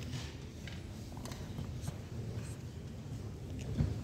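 A blackboard being wiped with a cloth eraser: faint rubbing strokes over a steady low room hum, with a short knock near the end.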